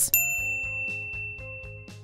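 A single bell-like ding sound effect, struck once just after the start and ringing out for nearly two seconds as it fades.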